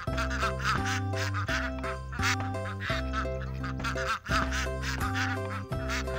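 Background music with held chords and a low bass line, with ducks quacking repeatedly over it.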